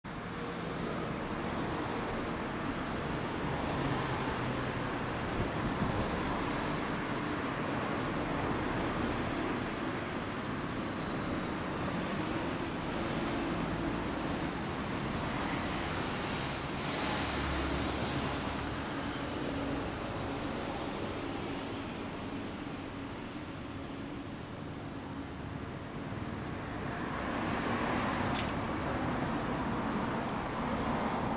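2015 Kawasaki ZRX1200 DAEG's inline-four idling steadily through a BEET Nassert full exhaust, getting a little louder near the end.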